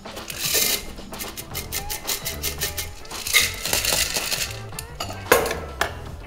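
Background music with a stepping bass line, over sharp metallic clinks of ice in a stainless steel cocktail shaker as a drink is strained through a fine-mesh strainer into glasses.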